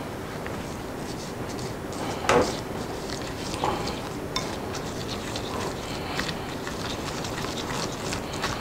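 A spoon stirring a thin soy-and-brown-sugar sauce in a ceramic bowl: soft scraping with scattered light clinks against the bowl, the loudest about two seconds in.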